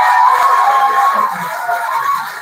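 Studio audience laughing, played back through room loudspeakers so it sounds thin and boxy; it eases off near the end.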